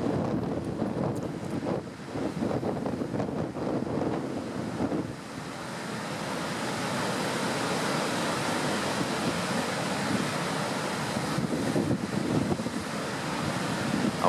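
Rough sea: heavy surf breaking and rushing against rocks, a continuous noisy roar. Wind buffets the microphone unevenly for the first five seconds or so, after which the surf settles into a steadier rush.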